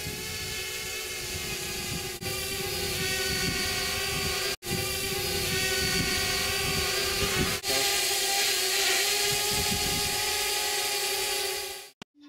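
Quadcopter drone's motors and propellers whining steadily, a held pitch with many overtones over a hiss. The sound breaks off briefly about four and a half seconds in and again near eight seconds.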